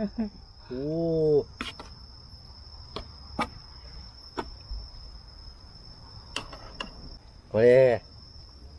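Crickets giving a steady high-pitched trill throughout, with a few short clicks of a metal spoon against the steel serving tray. Two brief "oh" exclamations, about a second in and near the end, are the loudest sounds.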